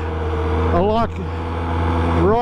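Polaris Sportsman 700 Twin ATV's twin-cylinder engine running at a steady, even pace while being ridden, with a man's voice saying a word about a second in.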